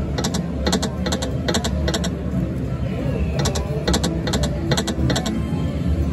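Video slot machine spin sounds: quick electronic clicks as the reels spin and stop, in two runs with a pause of about a second between them, over a steady low hum.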